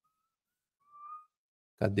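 A person whistling softly: a faint thin note early on, then one short whistled note about a second in that lasts about half a second, before speech resumes near the end.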